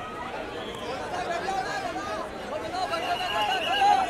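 Crowd of press photographers and onlookers shouting and talking over one another, with many voices overlapping and the calls getting louder near the end.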